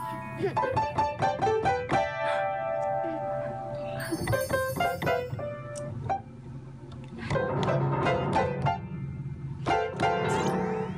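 A small child banging freely on a piano keyboard, striking clashing notes in quick, uneven succession. There is laughter about a second in.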